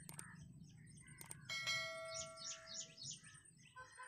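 Subscribe-button animation sound effect: two mouse clicks, then a bell chime ringing for about a second and a half. Birds chirp faintly in the background.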